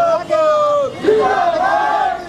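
A group of protesters shouting a slogan in unison: long, drawn-out shouted words that fall in pitch at the end, with several voices overlapping.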